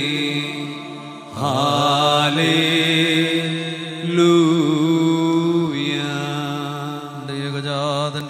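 Malayalam liturgical chant of the Holy Qurbana, a voice singing wavering, drawn-out phrases over a steady held accompaniment.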